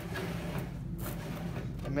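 Aluminium channel letter coil strip being rocked back and forth by hand in the machine's V-groove roller, a light rubbing and scraping of metal with a sharper scrape about halfway through, as the strip is seated in the groove.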